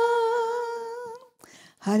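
A woman's voice holds the long final note of a Tamil worship song through a microphone, with a slight wobble, fading out just over a second in. A short pause follows before she starts speaking.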